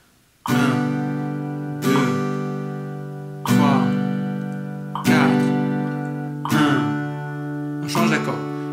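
Cort SFX5 acoustic guitar strummed with single downstrokes on an open G chord, one strum about every second and a half (metronome at 40), each chord left to ring and fade before the next.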